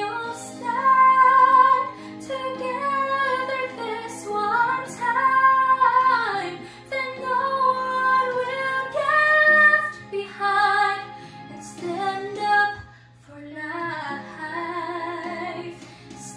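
A young woman sings a slow ballad into a handheld microphone, holding long notes with vibrato and sliding through melismatic runs. Under her voice runs a soft, steady accompaniment of held chords.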